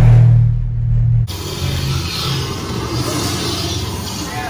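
Loud, low rumbling effect from a dark ride's show sound system, cutting off abruptly a little over a second in, followed by quieter, steady background noise.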